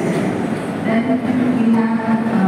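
A man speaking into a microphone over a public-address system.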